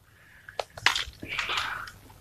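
Toy foam-dart blaster clicking as it is worked, with a few sharp clicks followed by a short airy rush a little past halfway.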